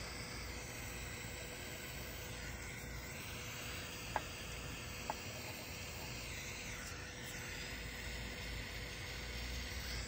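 Butane mini torch with a hot-air tip hissing steadily as it heats shrink tubing on a wire, with two small clicks about four and five seconds in.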